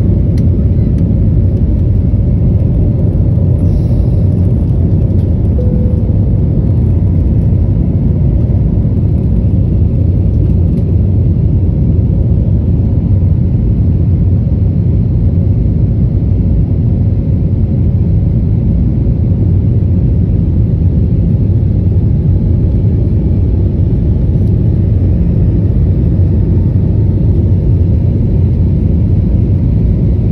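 Jet airliner at takeoff thrust heard from inside the cabin: a loud, steady low rumble of engine and airflow noise through the end of the takeoff roll, liftoff and initial climb.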